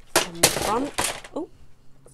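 Loud clatter of hard clear plastic knocking together, several sharp knocks over about a second, as clear acrylic stamping blocks are grabbed from their storage case.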